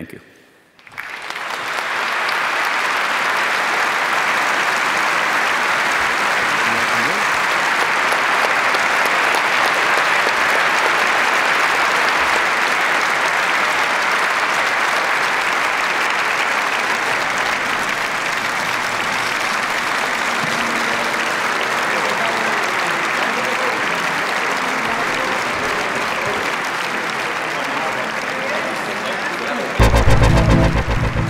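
Audience applauding: sustained clapping that swells up about a second in and holds steady.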